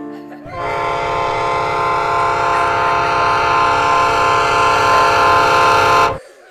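A train whistle held in one long, steady blast over a low rumble, starting about half a second in and growing slightly louder before cutting off suddenly.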